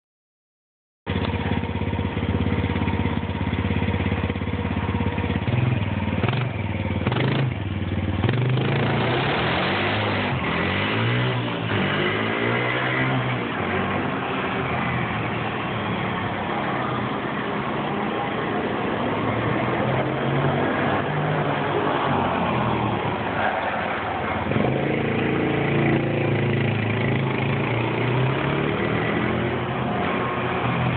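A vehicle engine running steadily. Its low hum shifts a little in pitch now and then. It starts about a second in.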